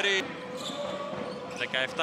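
Basketball game sound in a large indoor hall: crowd noise and a ball bouncing on the court, with a steady tone underneath.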